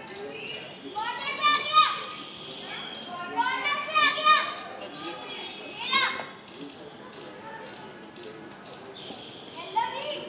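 Children's high-pitched voices, excited chatter and exclamations in bursts, loudest about two and four seconds in, with a sharp cry about six seconds in.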